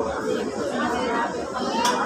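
Indistinct chatter of many people's voices in a large indoor hall, a steady background hubbub.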